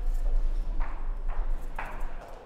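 Footsteps on a hard floor, a few soft steps about a second apart, over a steady low hum.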